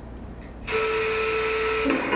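A steady buzzy electronic tone comes in suddenly about two-thirds of a second in and holds for just over a second, then stops.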